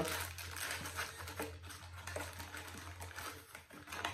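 Plastic sweet wrappers and candy packaging being handled and put away, crinkling and rustling with many small clicks.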